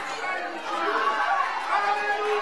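Several voices talking and calling out at once, with no single speaker clear.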